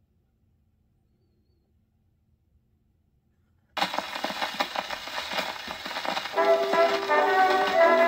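Near silence, then about four seconds in the surface hiss and crackle of a 78 rpm shellac record on an acoustic phonograph start suddenly. A couple of seconds later the 1924 Cameo recording's band introduction begins.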